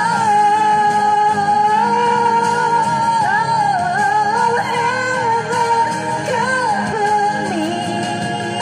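A woman singing long, held notes with a slow vibrato into a handheld microphone, over backing music.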